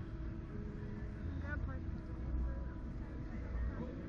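Faint distant voices briefly heard over a steady low rumble and hum of background noise.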